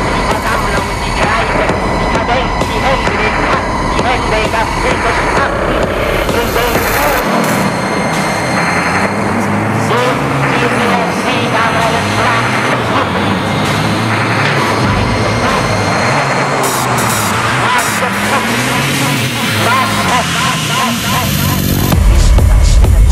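Dark techno: a dense, noisy, driving rhythm for the first seven seconds or so. Then the kick and bass drop out into a breakdown of synth tones that swoop up and down.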